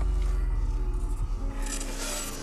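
Logo intro sting: a sudden deep bass hit with a glitchy noise wash, swelling brighter near the end and then fading.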